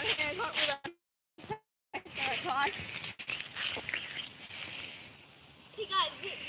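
Children's voices talking and calling out, with indistinct words. Near the start the sound drops out twice into dead silence at edit cuts.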